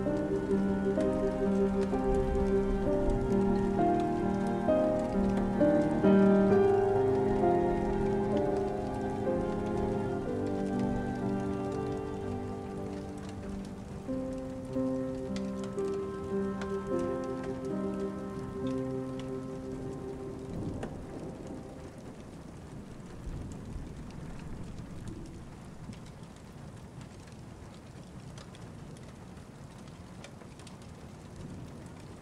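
Steady rain falling, with slow instrumental music playing over it. The music fades out about two-thirds of the way through, leaving the rain alone and quieter.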